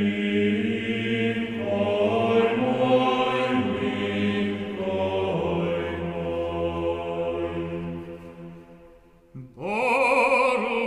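Choir and organ holding sustained chords of synagogue liturgical music, changing chord every second or two over a steady low bass note, then fading away almost to silence. Just before the end a solo cantor's voice enters with a strong vibrato.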